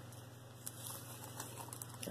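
Faint handling sounds, with a few light ticks and rustles, as a tape measure is laid out along a necklace.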